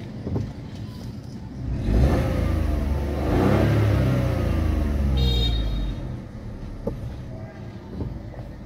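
2024 Maruti Suzuki Dzire's 1.2-litre three-cylinder petrol engine, heard from inside the cabin, revved while the car stands still. From idle it climbs about two seconds in to around 4,000 rpm, holds briefly, and falls back to idle near six seconds.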